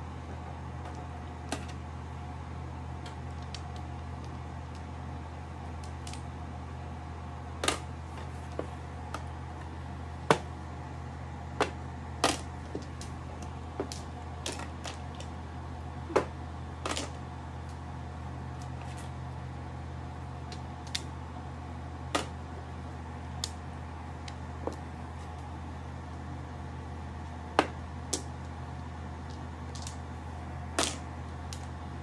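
Mahjong tiles clacking as players draw and discard them: sharp single clicks at irregular intervals, a couple of dozen in all, over a steady low hum.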